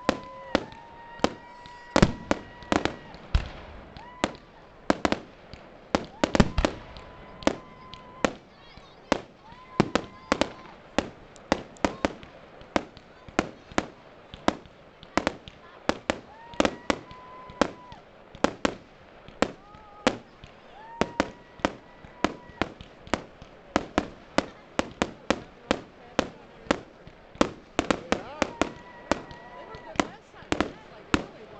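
Fireworks display: aerial shells bursting overhead in a rapid, uneven run of sharp bangs and crackles, about two or three a second.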